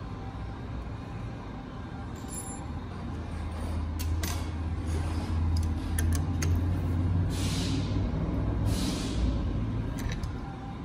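A steady low machine rumble that grows louder through the middle, with a few light metal clicks of the steel wrench being fitted onto the injector in the vise, and two short hisses near the end.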